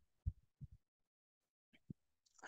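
Near silence with three faint, short, low thumps spread across the pause.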